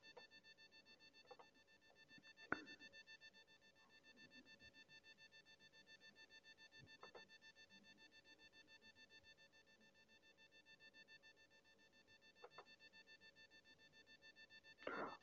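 Near silence: a faint steady whine in the recording, with a few brief faint clicks, the clearest about two and a half seconds in.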